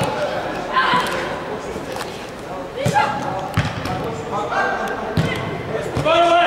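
Voices calling out in a large, echoing hall, with a few dull thuds of a football being kicked, about three of them in the second half.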